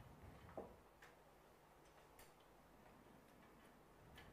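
Near silence: faint room tone with a few soft, sharp clicks.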